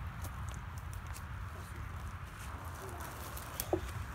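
Steady low rumble of wind on the microphone, with faint voices in the background.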